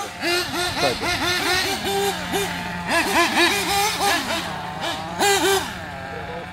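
Small nitro engines of 1/8-scale RC buggies (Kyosho MP9) revving in quick, repeated throttle blips, each a fast rise and fall in pitch, with one engine idling steadily underneath.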